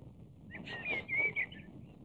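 A bird chirping: a short run of high, warbling notes lasting about a second, starting about half a second in.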